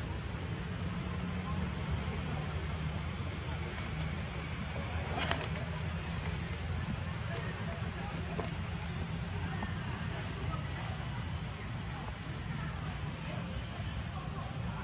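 Steady outdoor background noise: a low rumble under a high, even hiss, with one sharp click about five seconds in.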